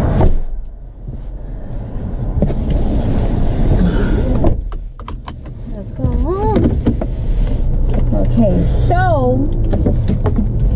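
Steady low road and engine rumble heard from inside a moving car, dipping briefly twice. A voice comes in over it in the second half.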